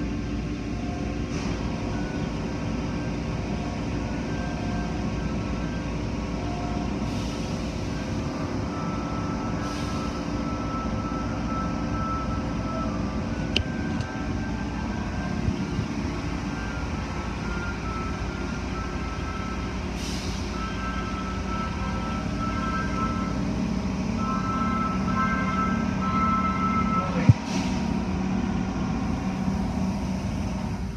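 Automatic car wash equipment running, heard through glass: a steady low drone of pumps and spraying water, with faint music playing over it and a sharp click near the end.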